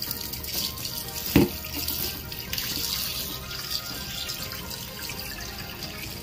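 Tap water running into a stainless steel sink and splashing over raw pork being rinsed by hand, with one sharp thump about a second and a half in.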